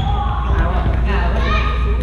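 Voices of badminton players echoing around a large gymnasium over a steady low rumble, with light thuds of play on the wooden court.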